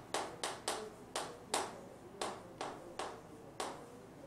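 Chalk tapping against a chalkboard while a line of characters is written: about ten short, sharp taps over four seconds, unevenly spaced, one per stroke.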